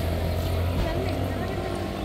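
Low, steady engine hum of a nearby motor vehicle, loudest in the first half-second, with faint voices over it.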